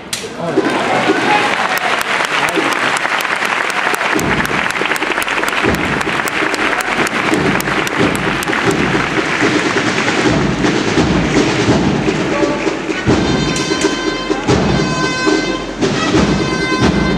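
A crowd applauding the processional float. About four seconds in, the drums of a Holy Week marching band (agrupación musical) start, and near the end its brass comes in with sustained notes as the march begins.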